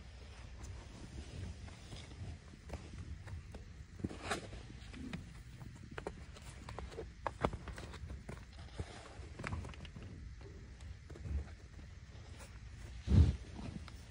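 American bison feeding at a metal trough and moving about: scattered knocks and hoof steps over a low rumble, with one loud low thump about a second before the end.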